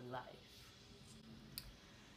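One short spoken word, then near-silent room tone broken by a faint sharp click about one and a half seconds in.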